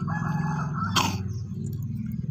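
A rooster crowing once, a held call of about a second at the start, followed by a sharp click about halfway through, over a steady low hum.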